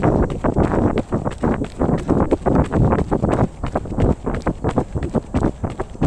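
Running footsteps of Nike Vaporfly Next% 2 racing shoes striking asphalt, about three strides a second, with wind buffeting the microphone.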